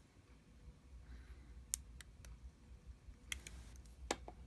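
A few faint, sharp, isolated clicks from fingers handling the steel case of an opened Seiko 6105 diver's watch, over a low room hum.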